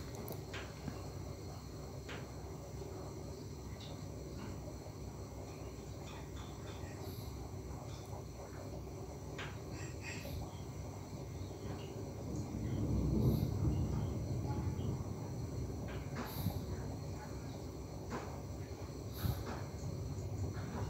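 Faint background ambience: a steady low rumble that swells for about two seconds past the middle, like something passing, with faint steady high tones and a few small scattered clicks of fishing tackle being handled.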